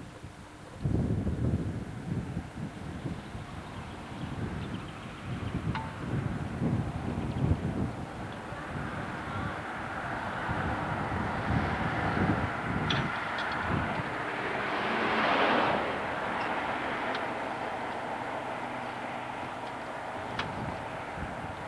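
Wind buffeting a camcorder's microphone in low, gusty rumbles, then a vehicle going by on the road, building up and loudest about 15 seconds in before fading.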